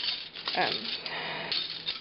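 Silver-plated and stainless steel flatware clinking and rattling as a hand picks through a plastic basket of spoons, forks and knives, with a few sharp clinks.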